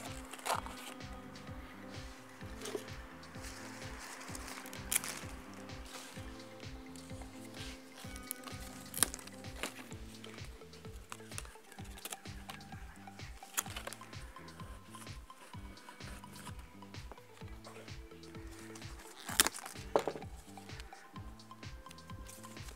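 Soft background music, with a few sharp clicks and light rustles as magnolia branches are handled and pushed into a block of floral foam.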